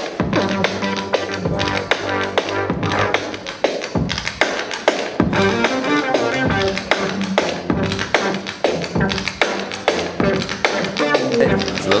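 Improvised electronic beat jazz: synthesizer beats with a steady rhythm of sharp hits over a moving bass line, played from a saxophone-fingered wireless Beatjazz controller.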